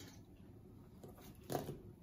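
Faint kitchen room tone with a single brief, soft knock about one and a half seconds in, from vegetables being handled between a plastic cutting board and a stainless steel stockpot.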